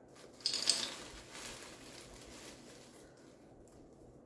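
Rustling of craft materials being handled, loudest about half a second in, then fading to faint rustles.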